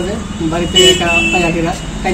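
A man speaking over a steady low hum, with a brief high horn toot about three-quarters of a second in.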